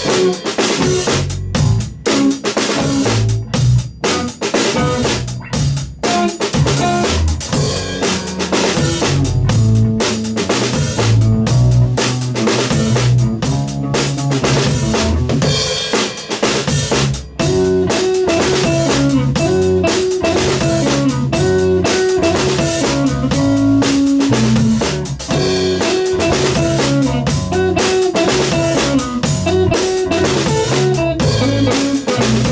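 A live rock trio of electric guitar, electric bass and drum kit playing a steady groove. A little past halfway the part changes and a repeated riff comes in higher up over the bass and drums.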